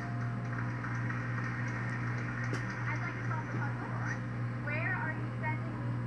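Game-show audio from a wall-mounted television, picked up across a small room: faint, indistinct voices over a steady low hum.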